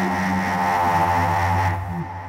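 Electronic synthesizer music in a late-'70s horror-film style: a dense sustained chord over a steady low bass drone. Near the end the upper tones cut off suddenly and the sound begins to die away.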